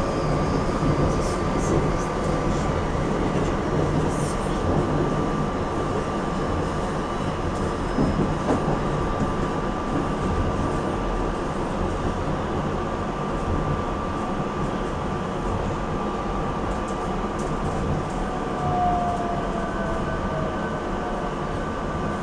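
Silverliner V electric railcar running, heard from inside the cab: a continuous rumble of wheels on rail with a steady electrical whine. Near the end a second whine drops in pitch as the train slows into a station.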